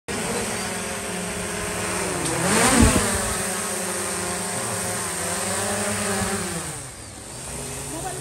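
Small quadcopter drone's propellers and motors buzzing close by in a steady multi-tone whine. The pitch swoops up and down as it manoeuvres, loudest about three seconds in, then falls in pitch and level near the end as the drone is taken in hand.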